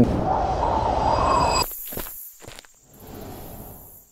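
Sound-design effects for a video transition, with no music. A whoosh swells and then cuts off suddenly about a second and a half in. A few footsteps and faint outdoor ambience follow.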